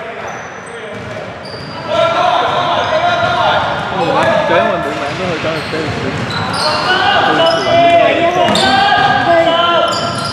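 A basketball being dribbled on the hardwood floor of a large sports hall. From about two seconds in, several voices call out over it.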